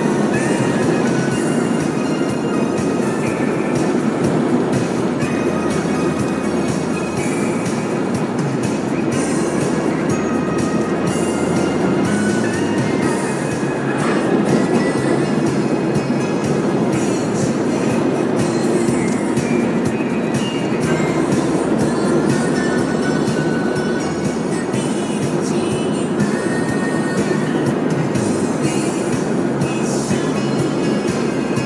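Music from internet radio playing over the car stereo, with a steady beat, heard inside the moving car's cabin over continuous road and engine noise.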